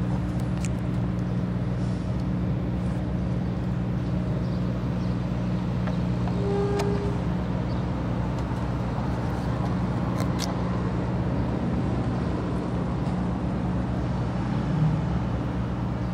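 A steady low hum from a running motor, even throughout, with a brief higher tone about six and a half seconds in and a few faint clicks.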